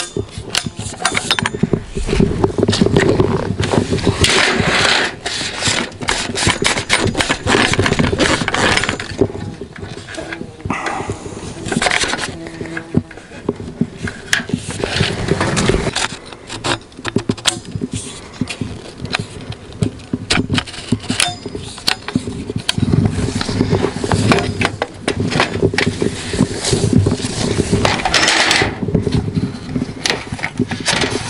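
Rustling and footsteps through tall grass and brush, with frequent clicks and knocks from a folding aluminium fishing platform and its leg poles being carried and handled.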